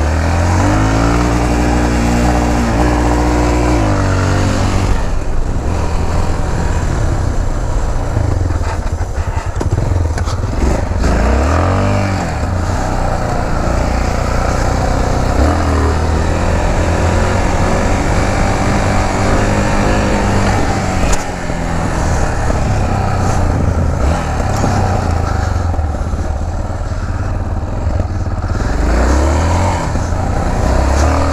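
Yamaha XT660's single-cylinder engine running under way, its revs climbing and falling repeatedly as the rider accelerates, shifts and backs off.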